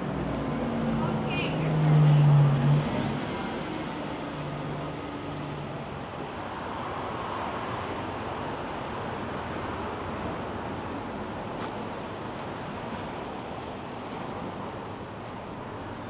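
A city bus passing close by, its motor tone loudest about two seconds in, then steady street traffic noise.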